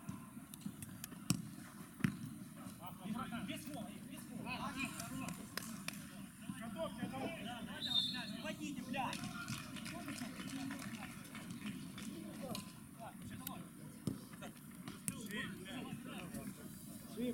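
Footballers' distant shouts and calls across a small outdoor pitch, with a few sharp thuds of the ball being kicked, the loudest two close together just over a second in.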